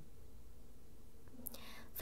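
Quiet room hiss during a pause in speech. About a second and a half in there is a short, soft breath, a close-miked intake of air just before the next phrase is spoken.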